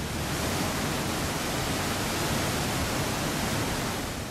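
Waterfall: a steady, even rush of falling white water, cutting in suddenly.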